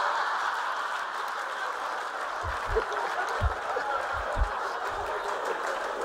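Auditorium audience laughing and applauding after a punchline: a steady wash of crowd laughter and clapping, loudest at the start and easing a little.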